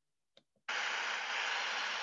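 Silence broken by one faint click, then a steady hiss that cuts in suddenly under a second in.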